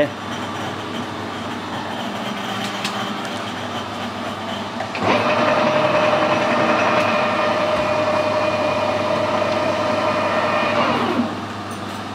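Metal lathe switched on about five seconds in, its motor and three-jaw chuck running steadily with a level mechanical tone, then switched off about a second before the end, the tone falling as the spindle spins down. Before it starts, only a steady low shop hum is heard.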